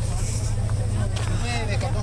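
A truck's engine idling with a steady low rumble, with people's voices around it in the second half.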